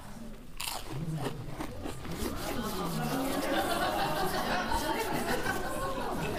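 Chewing and mouth sounds from people eating smoked mussels close to clip-on microphones, with faint murmured voices.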